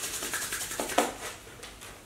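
Oiled palms rubbing quickly back and forth against each other, warming a few drops of argan oil. There is a sharper stroke about a second in, and the rubbing fades over the second half.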